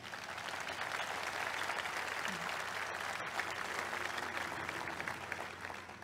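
Audience applauding, building up over the first second, holding steady, then tapering off near the end.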